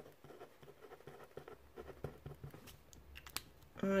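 Pencil writing on paper: faint, irregular scratching strokes with light ticks.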